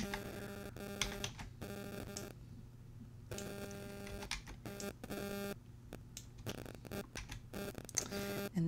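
Faint scattered clicks of a computer mouse and keyboard while text boxes are copied and pasted. Under them runs a low steady electrical hum, with a buzzing tone that cuts in and out several times.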